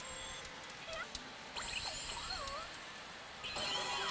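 Pachinko machine sound effects over a steady hall din: a few short warbling electronic tones in the middle, then a louder burst of effects setting in shortly before the end.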